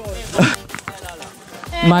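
Voices: a short spoken sound about half a second in, a quieter lull, then a voice starting to speak near the end.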